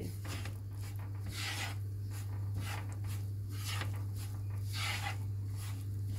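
Wooden spatula scraping and stirring flour as it is toasted in oil in a nonstick frying pan, about two strokes a second.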